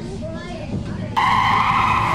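Tyre screech sound effect, as of a vehicle braking hard: a loud, steady-pitched squeal that starts abruptly about a second in and holds.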